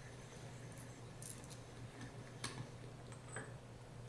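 A few faint metallic clicks and ticks as a loosened valve cap is spun out of a high-pressure pump's manifold and lifted away, the sharpest click about halfway through, over a low steady hum.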